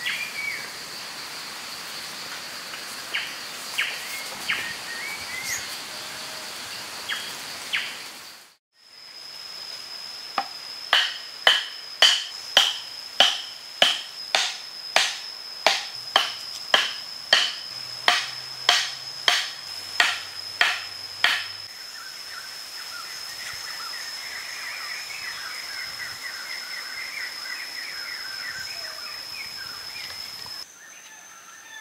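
A wooden stake being pounded into the dirt: a run of about twenty sharp knocks, roughly two a second, lasting about ten seconds. A steady high insect drone and bird chirps run underneath.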